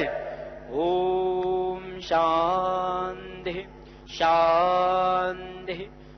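A man's voice chanting Sanskrit mantras in three long, held phrases of about a second each, with short pauses between them, in the steady, near-level pitch of Vedic recitation.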